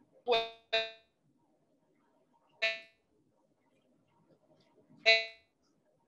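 Four short pitched tones, each rich in overtones and fading quickly: two in quick succession right at the start, one near the middle and one near the end, over faint room noise.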